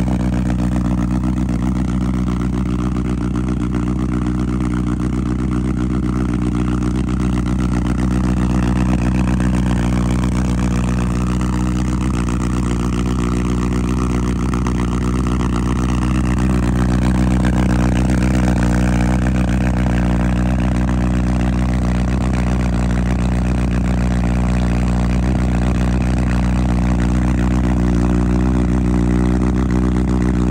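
Honda CB1000R Black Edition's inline-four engine idling steadily after a cold start, through a full aftermarket exhaust system.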